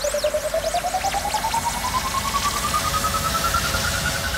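Hardstyle build-up with no kick drum: a single synth tone climbs slowly in pitch under fast pulsing and sweeping effects high above it.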